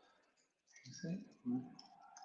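Faint computer keyboard typing, a few key clicks, with a brief low voice sound without clear words about a second in, the loudest part.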